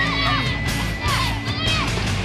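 Youth baseball players shouting and cheering, many high children's voices calling out at once and overlapping.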